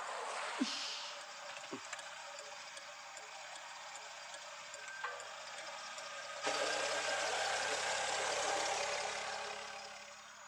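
A steady low hiss with faint regular ticking about twice a second. About six and a half seconds in, a Maruti Suzuki Swift's engine comes in suddenly louder, running steadily, then eases off near the end.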